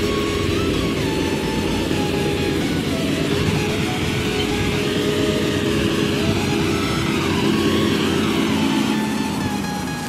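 John Deere tractor engine running steadily while pulling a soil-levelling scraper, with music playing over it.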